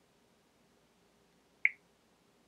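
A single short, sharp click about one and a half seconds in, a tap on the phone's touchscreen as the sort menu is opened; otherwise near silence.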